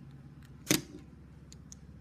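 A single sharp click about two-thirds of a second in, then a few faint ticks near the end, as a small plastic toy train is handled on a wooden tabletop.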